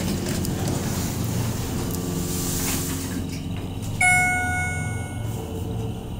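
Schindler hydraulic elevator in upward travel, its submersible pump motor giving a steady low hum that the rider calls a nice motor. About four seconds in, a single electronic chime sounds and fades within about a second as the car passes the second floor.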